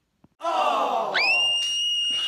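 A person's voice: a downward-sliding groan, then a long, high-pitched squeal held almost level for about two seconds. It is louder than the talking around it.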